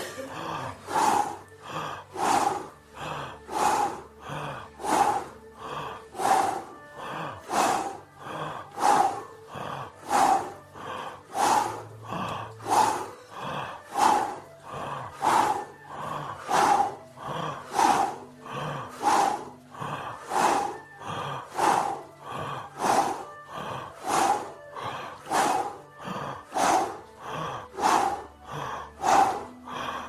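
Fast, rhythmic forced breaths voiced as a breathy "hu" in a breathing exercise, about one and a half a second, very even throughout.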